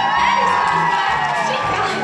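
Live pit band music with a steady bass beat under a long high note that glides up and holds, with the audience cheering and whooping.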